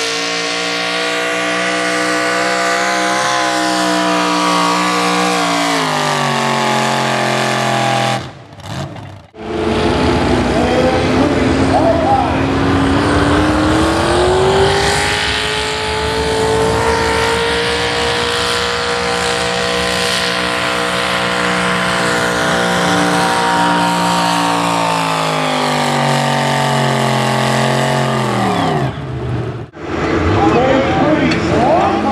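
Modified pulling tractors running at full load down a pull track. First a Massey-Harris 44 whose engine note falls as it loads down. Then, after a short break, a small Ford pulling tractor whose engine climbs to a high, steady note and drops away near the end.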